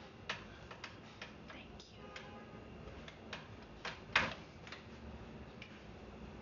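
Quiet room with scattered small clicks and taps at uneven intervals, the loudest about four seconds in.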